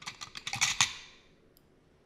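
A quick run of about ten light clicks, like typing on a keyboard, within the first second.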